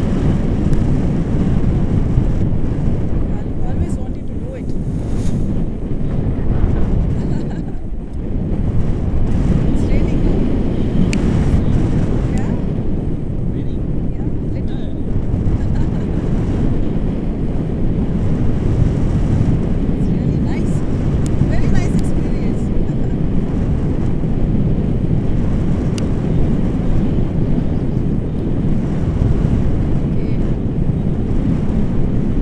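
Wind buffeting the microphone of a camera on a tandem paraglider in flight: a loud, steady low rumble that dips briefly about eight seconds in.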